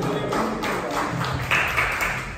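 A live band's last notes dying away, with a few scattered hand claps.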